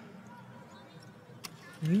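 A pause between lines of a slow sung chant: low background with a faint click, then near the end a voice slides upward into the next sung line.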